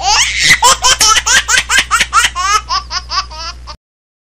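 Loud, high-pitched laughter: a long run of quick 'ha' pulses, about five a second, over a low steady hum. It cuts off suddenly near the end.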